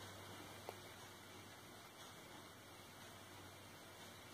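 Near silence: the Razor E300's 24-volt DC motor turning at its lowest speed, about 23 RPM, heard only as a faint steady low hum. One small click about two-thirds of a second in.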